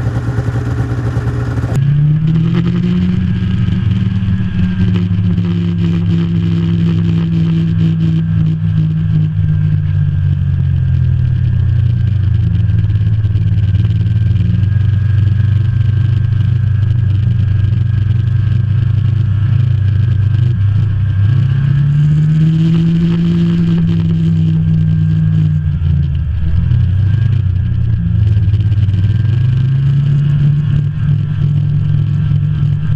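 Snowmobile engine running under way on a trail, its pitch climbing as the throttle opens about two seconds in, easing off around ten seconds, rising again past twenty seconds, dropping briefly and climbing once more near the end.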